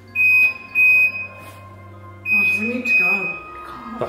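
High-pitched electronic alarm beeping, which the narration identifies as the kitchen motion sensor. It gives two half-second beeps, then a longer steady tone from about halfway through, with a person's low voice over it.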